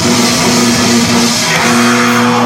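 Live heavy rock band playing loud, with electric guitars holding a steady chord.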